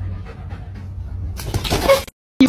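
A dog panting over a steady low hum, with a louder scuffle in the last half second.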